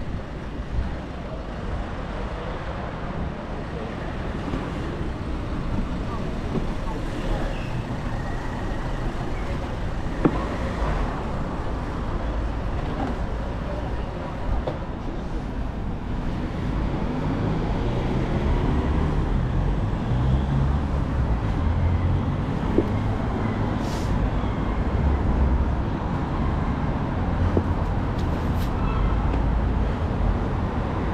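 City street traffic: cars and other vehicles going by, with a steady low rumble. An engine grows louder from about halfway through as a vehicle comes close.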